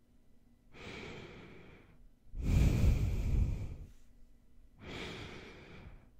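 Nasal breathing right up against an ASMR microphone: three breaths, soft, then loud with air rushing onto the mic, then soft again, with short quiet gaps between.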